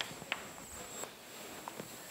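A few faint, scattered taps in a quiet classroom: chalk tapping on a blackboard as writing ends, then a man's footsteps on a hard floor.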